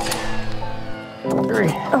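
Background music with one sharp bang right at the start, from a cordless framing nailer driving a nail into a wall stud. A voice exclaims "Oh" near the end.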